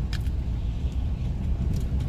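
Steady low rumble of a cargo van driving slowly, engine and road noise heard from inside the cab, with a light click or rattle just after the start.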